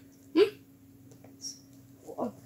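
A person's voice giving one short questioning "hmm?" about half a second in, then quiet room tone with a faint steady hum.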